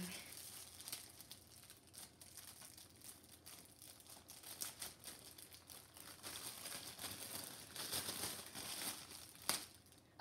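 Gift wrapping crinkling and tearing as a small present is unwrapped by hand, in irregular rustles that get busier in the second half, with a sharp click near the end.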